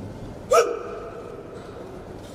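A man's single short, sharp shout about half a second in, ringing on briefly in a large hall.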